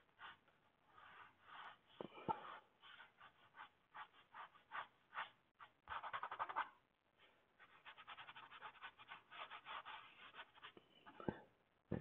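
Faint paintbrush strokes and dabs on the painting's surface: many short strokes in quick, irregular runs.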